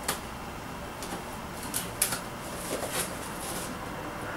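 Cardboard and paper packaging being handled as a box is opened: scattered rustles and light clicks, the sharpest a couple of seconds in.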